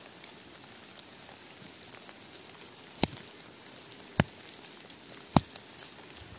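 Three sharp clicks, a little over a second apart, over a faint steady background hiss.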